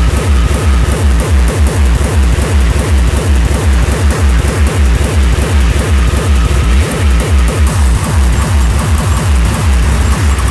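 Hardcore industrial techno: a heavy kick drum beats evenly at about 160 a minute under a dense, noisy wall of sound.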